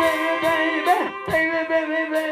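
Live funk band playing: a sustained lead line with swooping pitch bends over a steady chord and regular drum hits.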